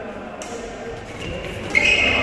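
Badminton doubles rally in a large indoor hall, with a sharp, loud hit near the end as a player plays the shuttle. Voices murmur in the background.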